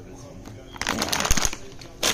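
Plastic meat packaging rustling and crinkling as it is handled, a burst of about a second starting partway in.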